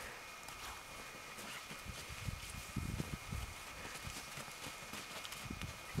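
Quiet outdoor ambience with faint, irregular low thuds and rustles and a faint steady high hum.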